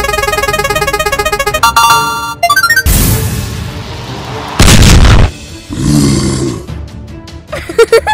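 Cartoon sound effects over music: a prize wheel spinning with rapid, even ticking, a short chime as it stops, then two loud crashes, the first dying away in a hiss, as a gravestone drops in a cloud of dust, and a falling tone near the end.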